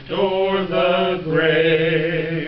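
A man singing a hymn, holding two long notes one after the other.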